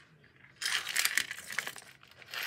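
Small plastic and silicone hand-sanitizer holders with metal keychain clips being handled: about a second of rustling with small clinks, starting about half a second in.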